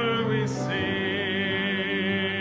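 Worship song: a voice holds one long note with vibrato over steady instrumental accompaniment, coming in about half a second in after a short hiss.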